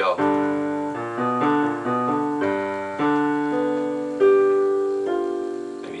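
Digital piano playing two-note intervals in both hands, slowing down as the gaps between notes grow. The last notes are held and ringing under the sustain pedal.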